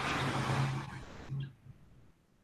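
A burst of hiss with a low steady hum from a mobile phone held up to a computer microphone, fading out about a second in, with no clear voice coming through.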